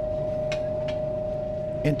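A steady, even hum on one high-ish pitch, with a faint click about half a second in.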